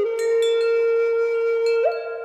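A flute holding one long steady note while wind chimes are struck and ring over it. Near the end the flute note breaks off and the chimes ring on, fading.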